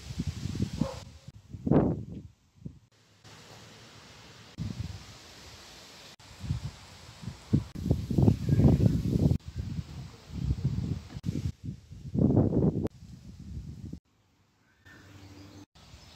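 Outdoor ambience with irregular gusts of wind rumbling on the microphone. The background changes abruptly several times where short clips are cut together.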